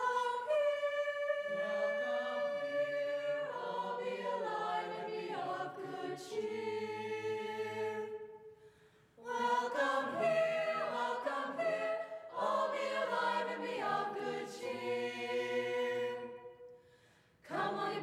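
Mixed-voice madrigal choir singing unaccompanied, in several parts, in long phrases with two brief breaks between them, about eight and seventeen seconds in.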